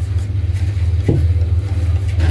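A steady low mechanical hum, like an engine or machine running at idle. A brief short murmur comes about a second in.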